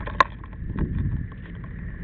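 Fire engine running steadily, with a single sharp click about a quarter second in.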